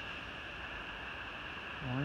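Steady outdoor background hiss, even and unbroken, with a continuous high band in it; a voice says a short 'oh' near the end.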